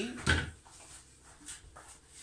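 A single short knock about a third of a second in, followed by faint handling sounds.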